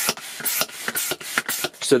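Quick run of short rubbing and scraping noises, about six a second, from a hand working a plastic hand-held air pump.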